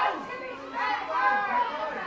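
Several high voices shouting and calling over one another across the pitch, the calls of players and sideline spectators during live lacrosse play, with no clear words.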